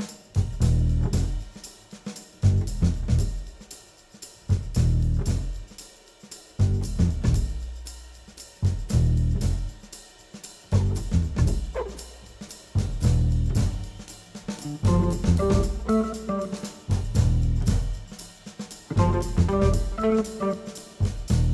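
Instrumental groove jazz from a studio band, led by a drum kit with bass drum, snare and hi-hat, over heavy low bass notes in a stop-start pattern about every two seconds. Higher pitched melody notes join about three-quarters of the way in.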